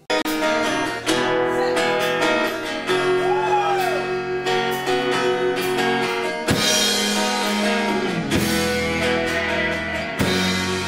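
Live rock band playing, with a strummed acoustic-electric guitar over drums and electric guitar, the chords changing every couple of seconds.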